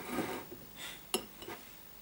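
Glassware being handled on a tabletop: a brief rustle, then a sharp glass click a little after one second and a softer knock half a second later.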